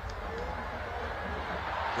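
Steady stadium crowd noise during a football play, an even murmur with a low rumble underneath.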